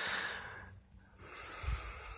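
A person breathing close to the microphone: two breaths, a short one at the start and a longer one beginning a little after a second in.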